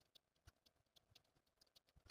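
Near silence, with a few faint, scattered soft clicks and rustles as pinned linen fabric is handled.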